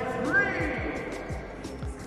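A basketball being dribbled on a hardwood court, a low thump about every half second, under steady background music in the gym. A brief high chirp comes about half a second in.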